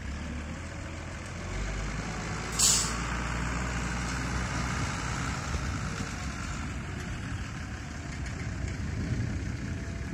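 Farm tractor engine running steadily at low speed, with a short, sharp air-brake hiss from a heavy truck about two and a half seconds in.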